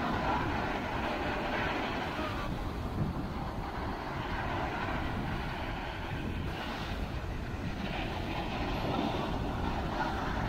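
Ocean surf breaking and washing up the beach in a steady roar, with wind buffeting the microphone as a low, uneven rumble.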